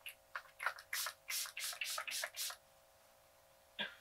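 Fine-mist pump spray bottle of setting spray being pumped at the face: a quick run of about eight short hissing spritzes over the first two and a half seconds.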